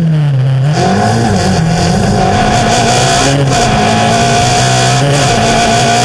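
Slalom car's engine heard from onboard: the revs dip and climb again in the first second, then the engine runs on at moderate, slightly wavering revs. A steady high whine joins in under a second in, over wind and road noise.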